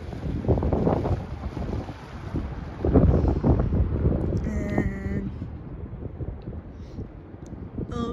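Wind buffeting the microphone in gusts, with two strong gusts, one shortly after the start and a longer one about three seconds in.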